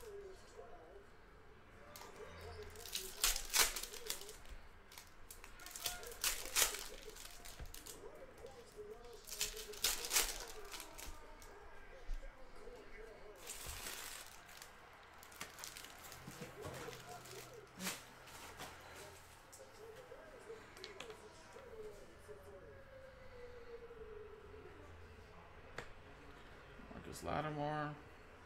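Foil trading-card packs being torn open and their wrappers crinkled, with cards being handled: a few short bursts of tearing and crinkling in the first half, then quieter rustling.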